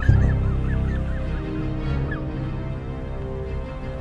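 Background music with a comic sound effect laid over it: a run of quick, high, wavering calls, about five a second, that fade out about two seconds in.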